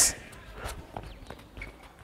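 Faint, scattered taps of a boy's feet and a football on artificial turf as he takes a first touch and dribbles.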